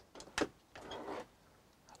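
Faint click of a boat's ignition key switch being turned, followed about half a second later by a brief soft noise.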